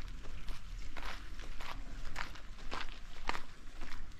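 Footsteps of a person walking on a paved tile footpath, a little under two steps a second.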